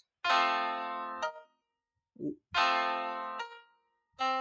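Two chords played on a keyboard, about two seconds apart, each fading and released after about a second. They sound out the last harmony example, a melody line that moves by two leaps, which is not an escape tone.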